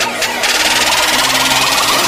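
Electronic intro sound effect: a rapid buzzing that swells in about half a second in, over low sustained tones.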